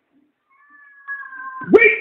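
A faint, thin, high-pitched drawn-out cry lasting about a second, sinking slightly in pitch, cat-like in character. A man's loud amplified voice cuts in just before the end.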